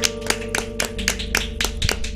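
Three people clapping, irregularly about four times a second, over a chord held on a Nord Electro 6 stage keyboard at the close of a song.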